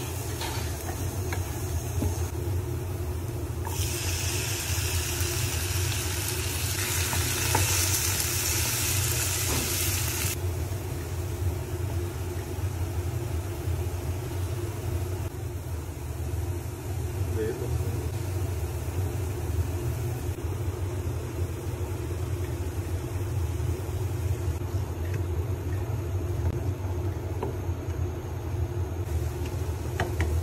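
Chopped onions and tomatoes frying in oil in a pan, a steady sizzle over a constant low hum. The sizzling grows much louder from about four seconds in and drops back about six seconds later.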